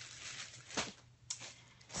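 Faint handling noise of objects being moved about: a soft rustle, then a light knock a little under a second in and a sharp click just past the middle.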